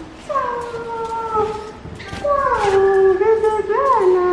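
A small dog whining in two long drawn-out cries. Each falls in pitch, and the second wavers up and down near the end.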